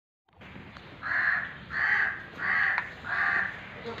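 A bird calling four times in an even series, each harsh call about half a second long, with a short gap between calls.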